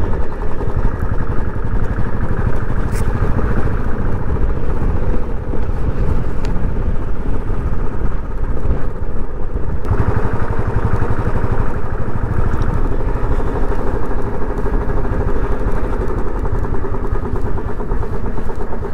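Royal Enfield single-cylinder motorcycle engine running while the bike is ridden along the road, picked up by a helmet-mounted camera. The sound changes abruptly about ten seconds in.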